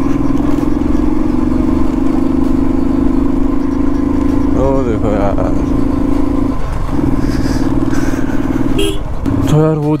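Royal Enfield Thunderbird 350's single-cylinder engine running steadily while being ridden, its note dropping out briefly about two-thirds of the way in.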